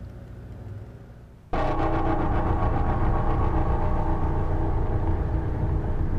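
A faint low hum, then about one and a half seconds in a sudden cut to loud, steady engine and road noise of a moving vehicle.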